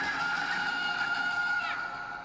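A young boy's long, high-pitched scream, held on one pitch and sliding down as it breaks off near the end.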